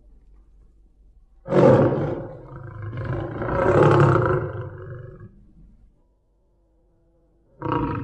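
Big cat roaring: one long roar starts about one and a half seconds in, swells again midway and fades out, then a short roar comes near the end.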